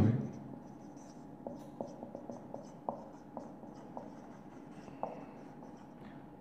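Marker pen writing on a whiteboard, faint: a string of light taps and short scratches of the felt tip as a line of words is written, with a brief squeak near the end.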